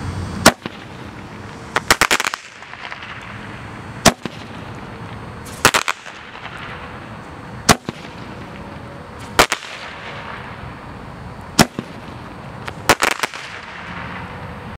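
Roman candle firing: a sharp pop about every 3.5 s, each followed about a second and a half later by a quick cluster of crackling bangs, four times in all. A steady hiss runs between the shots.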